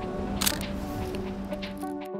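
Background music playing, with a single sharp camera shutter click about half a second in, from the Olympus OM10 35mm film SLR.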